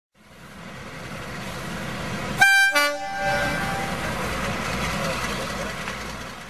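Train running with a rumble that builds up, then a two-tone horn about two and a half seconds in: a short high note followed by a lower note that dies away. The rumble carries on and begins to fade near the end.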